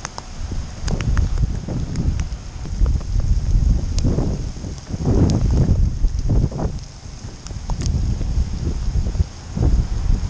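Wind gusting across the camera microphone, a deep, uneven buffeting that swells and drops every second or two, with a few sharp clicks scattered through it.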